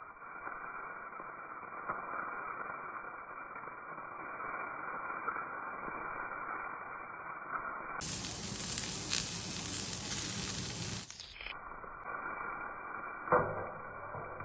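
Dried chillies, garlic, ginger and lemongrass sizzling in hot oil in a stainless steel wok as a metal spatula stirs them. A louder, fuller stretch of sizzling comes about two-thirds of the way through, and a sharp clank of the spatula against the wok comes near the end.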